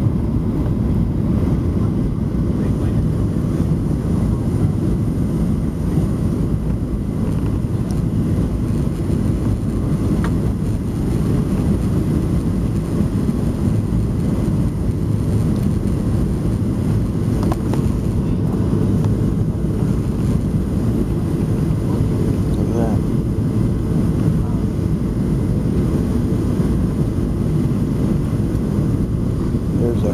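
Steady low roar of a Southwest Airlines Boeing 737's jet engines and rushing airflow, heard inside the cabin over the wing during the landing approach with the flaps extended.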